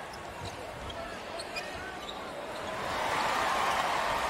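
Game sound from an NBA court: a basketball dribbled on hardwood as a player pushes it up the floor, with faint sneaker squeaks, and the arena noise swelling over the last second or so as he drives to the basket.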